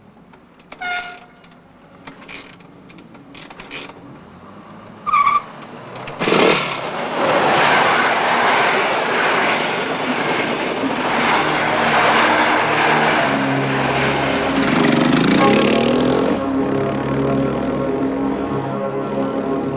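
Train passing close by: a loud rushing rumble that sets in sharply about six seconds in and lasts about ten seconds, after a few quiet clicks and a brief high tone just before it.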